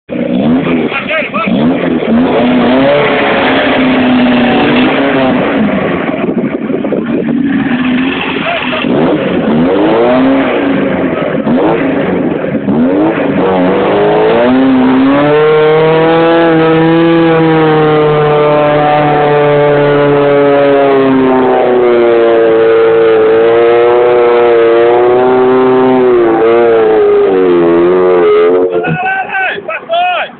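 Willys jeep engine revving hard while the jeep works through a deep mud hole. About halfway through the revs climb and are held high and steady for over ten seconds as it drives out of the mud, then fall away near the end.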